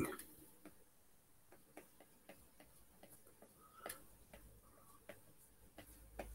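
Faint, even ticking, about four ticks a second, over near silence.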